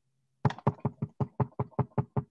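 A hand knocking rapidly and without pause on a hard surface, about seven knocks a second, starting about half a second in.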